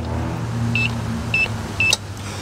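An electronic keypad lock giving three short, identical high beeps about half a second apart as its buttons are pressed, each beep confirming a key press during code entry. A steady low motor hum runs underneath and eases off near the end.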